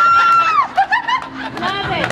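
A high-pitched voice holds one long note, a squeal or whoop, that drops away about half a second in. It is followed by short, quick bursts of laughter and chatter.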